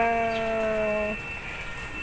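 A woman's drawn-out hesitation sound, a held 'uhh' that sags slightly in pitch and stops about a second in, followed by quieter room noise with a faint steady high tone.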